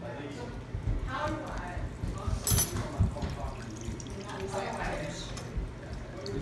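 Meat juices pouring and dripping off a plate into a small saucepan, with a sharp click about halfway through.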